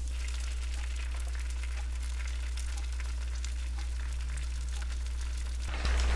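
Bacon sizzling in a pan on a stovetop, with a steady crackle of small pops over a constant low hum. Near the end a louder rush of noise cuts in.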